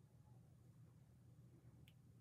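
Near silence: quiet room tone, with one faint short click near the end.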